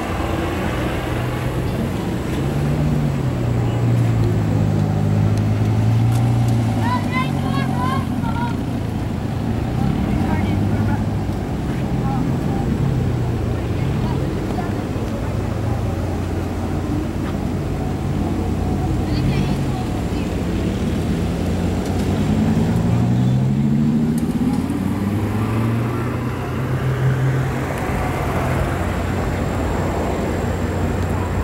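Car engines running nearby, their pitch wavering and rising as they rev or move off, with people talking in the background.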